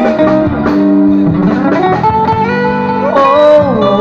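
Live band music: bass guitar and guitar accompaniment under a long, wavering, gliding lead melody.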